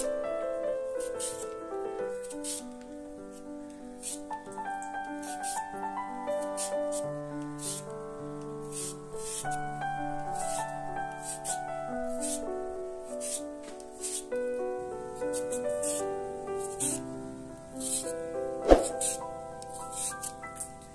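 Instrumental background music of held melodic notes, over short, irregular scraping strokes of a julienne peeler shredding a raw peeled potato. A single sharp knock comes near the end.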